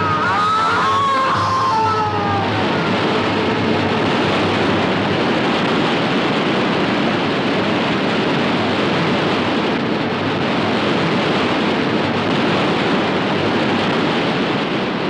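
A man's long cry that falls in pitch over the first two seconds, over the steady rushing of a large waterfall that continues unchanged.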